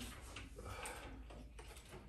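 Faint small clicks and light knocks of a glass-and-metal table being gripped and lifted, its glass panels shifting in the frame.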